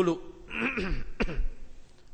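A man clearing his throat once, a rough sound lasting about a second that starts about half a second in, with a sharp click near its end.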